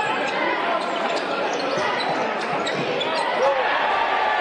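Live sound of a college basketball game in an arena: crowd noise, with the ball bouncing and short squeaks from sneakers on the hardwood court.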